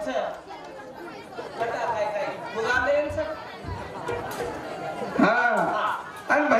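Indistinct chatter of several voices, then a man's voice over the stage microphone, louder, about five seconds in.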